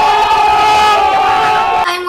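A group of young people yelling one long, loud "ohhh!" together, a reaction meme sound effect, which cuts off suddenly near the end.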